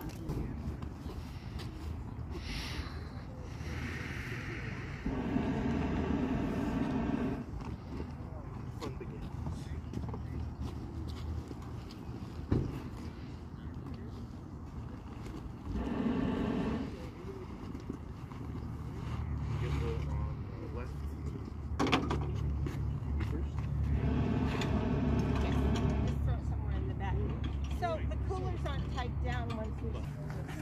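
A motor running steadily at low speed, with a louder pitched mechanical hum swelling for a second or two three times. There are two sharp knocks along the way.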